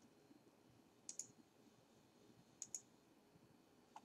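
Two faint computer mouse clicks about a second and a half apart, each heard as a quick pair of ticks (press and release), over near silence.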